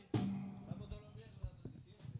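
A single low musical-instrument note, struck or plucked, starting sharply and fading over about half a second, followed by a few faint soft knocks.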